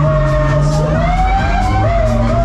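Loud dance music from a fairground ride's sound system, with a siren-like lead tone wavering and gliding up and down over a held bass note and a steady ticking beat.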